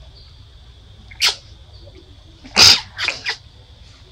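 Short, high-pitched macaque calls: one about a second in, a louder one just past halfway, then two quick ones close after it.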